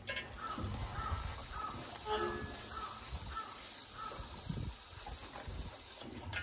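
A bird calling in a quick run of short calls, about two a second, for around four seconds, over low rustling and shuffling in straw as a cow shifts about in her pen.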